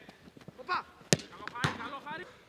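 A football kicked hard on a grass pitch about a second in, then a second thud of the ball half a second later, with short shouts from players around it.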